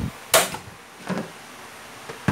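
Gas stove burner being lit under a pressure cooker: two sharp igniter clicks about three-quarters of a second apart, the first the louder.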